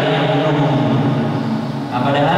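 A man's voice chanting, holding a long steady note that breaks off briefly near the end.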